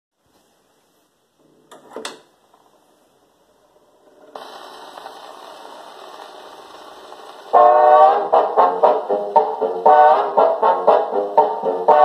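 A portable acoustic gramophone's soundbox is set down on a spinning shellac 78 with a short knock, followed by a steady surface hiss from the lead-in groove. About seven and a half seconds in, a 1954 orchestra's brass-led introduction starts, heard through the gramophone's horn.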